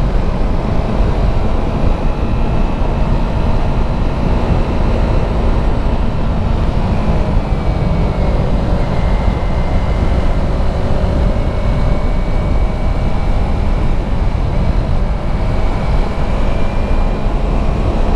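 Wind rumble on the camera's microphone while riding a 2018 Yamaha YZF-R3 at road speed, with the bike's parallel-twin engine running steadily underneath. The engine note sags slightly about halfway through and then climbs again.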